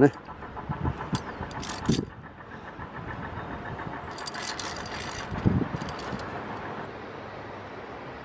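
A steady faint hum like a distant engine, with a few scattered clicks and knocks.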